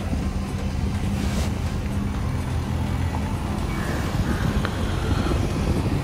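Steady engine hum and road noise of a moving vehicle, heard from inside it.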